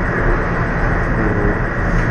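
Steady room noise with a low hum underneath and no speech, the constant background of the recording.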